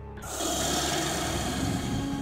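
Cartoon magic-appearance sound effect: a steady hissing rasp that comes in about a third of a second in and holds, as a glowing figure materializes.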